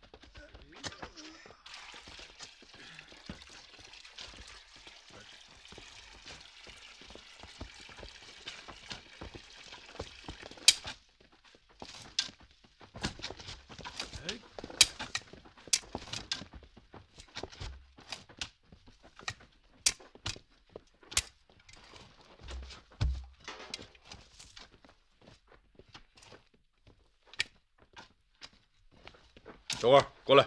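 A steady hiss of ambience for about the first ten seconds, then scattered sharp knocks, scrapes and low thuds of men working with tools and setting down heavy loads on a dirt road.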